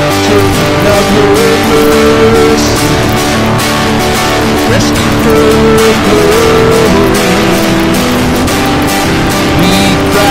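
Acoustic guitar strummed steadily through an instrumental passage of a worship song, with held notes sounding over the strumming.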